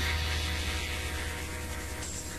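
Steady electrical mains hum with hiss, slowly fading as a lo-fi rock recording dies away after its last sung line.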